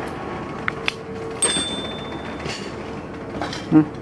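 Steady workshop background noise with a faint hum, a few light clicks, and one sharp click about a second and a half in that rings briefly like struck metal.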